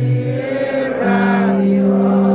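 Voices singing a slow chant-like hymn, holding long notes; a new held note begins about a second in.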